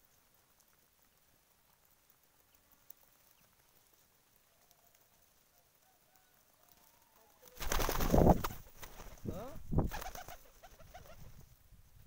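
Domestic pigeons cooing, faint at first; about two-thirds in comes a loud, brief flutter of wings close by, then more cooing.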